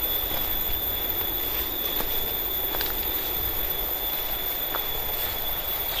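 Steady forest ambience while walking: a constant high-pitched insect drone over a low rumble, with a few faint crackles of footsteps on dry bamboo leaf litter.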